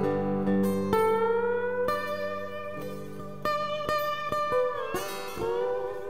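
Live country-rock band playing a song's instrumental introduction: guitars strummed and plucked under a lead line that slides in pitch, with a falling bend near the end.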